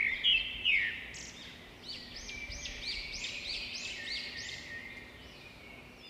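Bird song: a run of quick arching chirps, repeated about three times a second through the middle, loudest in the first second and fading toward the end, over a faint steady hum.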